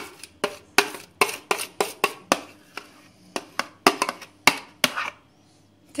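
A spoon scraping and knocking against plastic tubs as thick, half-frozen ice cream mixture is scraped out and stirred: a quick, uneven run of sharp clicks, about three a second, that stops about a second before the end.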